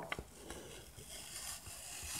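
Faint rustle of a paper sticky note being peeled off a hard plastic card case, with two light clicks right at the start.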